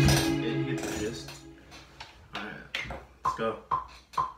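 A synth melody from the Native Instruments Analog Dreams software instrument, played on a MIDI keyboard, breaks off with a sudden hit, and its notes ring out and fade over about a second and a half. It is followed by a handful of short, separate sounds and a murmuring voice.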